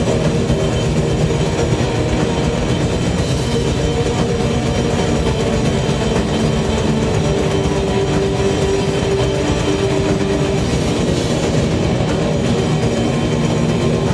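Metal band playing live at high volume: a steady wall of heavily distorted guitar and drums, with held chords droning through.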